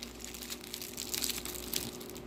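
Faint crinkling and rustling of a gum wrapper being handled, over a faint steady hum.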